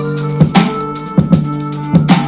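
Hip hop instrumental beat played through an AKIXNO 40-watt 2.0-channel soundbar turned all the way up in its music mode: a few sharp drum hits over a held bass note.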